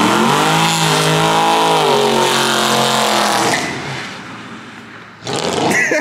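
Camaro SS V8 engine revving hard as the car accelerates: the pitch climbs in the first second, holds, then drops and fades away after about three and a half seconds as it drives off.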